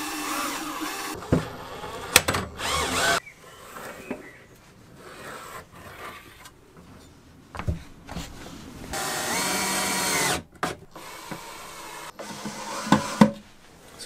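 Electric drill boring a twist bit into a wooden drawer, in short runs during the first few seconds and again in one longer steady run about nine seconds in, with scattered knocks of handling between.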